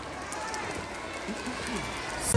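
Faint, indistinct chatter of voices.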